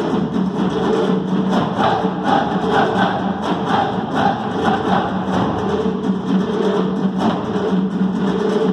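A troupe of dancers beating double-headed hand drums together in a fast, dense rhythm, over a steady sustained accompanying tone.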